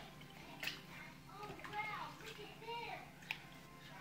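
Faint sloshing of brine as a hand stirs it in a plastic bucket, with a few small splashes. A child's voice is faintly heard in the background in the middle.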